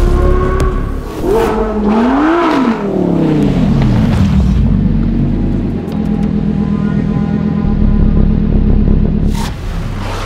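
Lamborghini Huracán Sterrato's V10 engine revving, its pitch climbing and falling back over the first few seconds, then a steady drone under music. A whoosh comes near the end.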